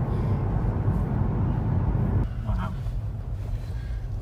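Tyre and road rumble heard inside the cabin of a Honda e, an electric car with no engine note. The rumble is loud and steady, then drops off suddenly about two seconds in.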